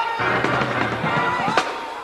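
Live church band playing: sharp drum and cymbal hits over sustained keyboard or organ chords.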